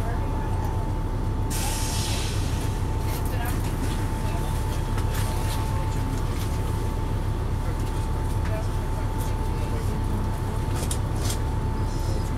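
Caterpillar C9 ACERT inline-six diesel of a Neoplan AN459 articulated transit bus idling with a steady low rumble, heard from inside the cabin, with a thin, steady high-pitched tone running through it. About a second and a half in, a short loud hiss of released air comes from the bus's pneumatics.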